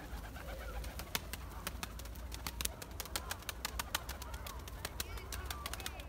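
Domestic pigeons close by: a scatter of small, sharp clicks and faint calls over a light low rumble.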